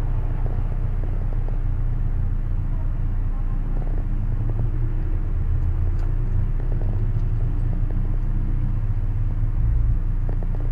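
Steady low rumble of a car engine idling.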